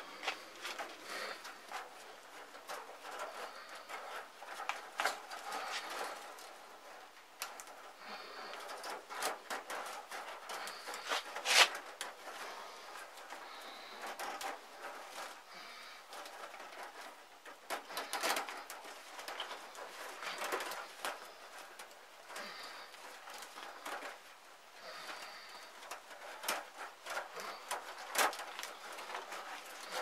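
Chicken wire being scrunched up by hand and pushed into the open end of a chicken-wire tube, an irregular run of small rustles, rattles and clicks, with one sharper click about halfway through.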